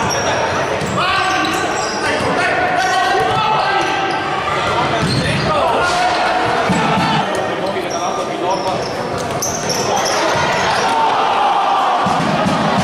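Indoor futsal play echoing in a sports hall: overlapping shouting voices from players and spectators, with scattered thuds of the ball being kicked and bouncing on the wooden court.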